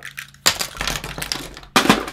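Small USB flash drives clinking and clattering in the hands and against the desk, a sudden rattle starting about half a second in and a sharp knock near the end.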